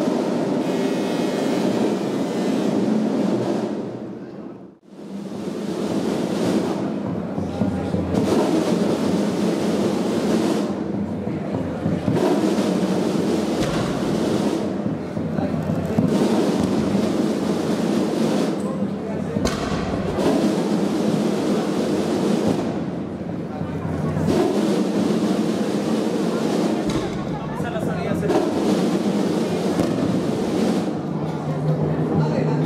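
Processional band music mixed with crowd voices, echoing in a large church. The sound drops away briefly about five seconds in.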